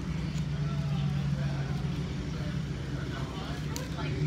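Restaurant room noise: a steady low hum with faint voices of other diners, and a light click near the end.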